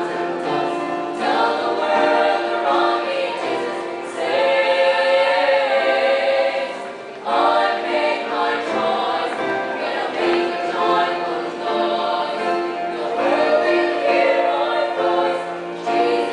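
A female vocal group singing a Christian song in chorus, in long held phrases with a short break about seven seconds in.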